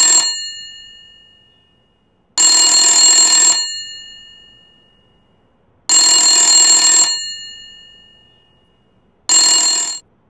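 Telephone ringing in rings about a second long, one every three and a half seconds, each with a short fading tail. The last ring is cut off abruptly as the phone is answered.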